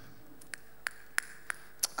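A run of about five sharp clicks, evenly spaced at about three a second and starting about half a second in, over a faint steady hum.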